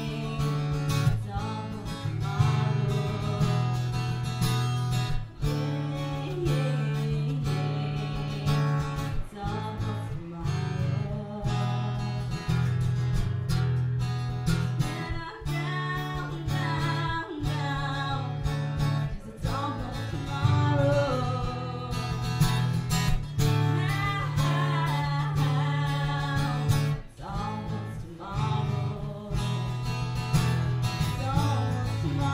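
A woman singing while strumming an acoustic guitar, a solo live performance.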